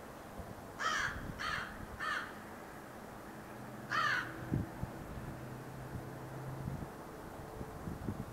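A crow cawing: three quick caws about a second in, then a single caw about four seconds in.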